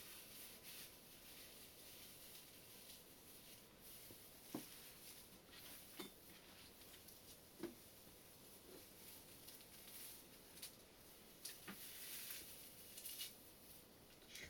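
Faint rustling of dry forest moss being rubbed and crumbled between the hands, with a few sharper crackles scattered through it.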